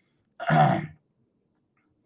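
A man clearing his throat once, a short rough burst about half a second long, near the start.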